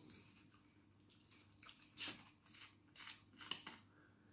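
Plastic soda bottle's screw cap twisted off: a few faint clicks and short scratches, with a brief rush of noise about two seconds in as it opens.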